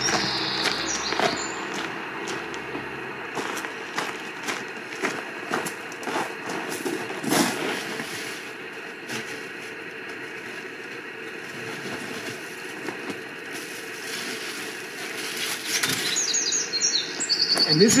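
Irregular scrapes, clicks and knocks from rummaging inside a steel oil-drum pit-fire kiln as fired pots are dug out, mixed with footsteps crunching on gravel.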